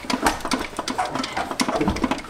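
Quick, irregular metallic clicks and clatter as a car's transmission is worked loose from the engine, with a low knock near the end.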